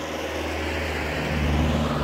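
A car going past on the road, its engine hum and tyre noise growing louder to a peak about one and a half seconds in, then easing a little.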